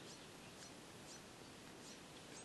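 Near silence: faint outdoor background hiss with a few scattered, faint, short bird chirps.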